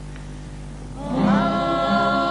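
Carnival comparsa chorus of many voices singing together in harmony, entering about a second in on long held chords after a quieter moment with only a low held note underneath.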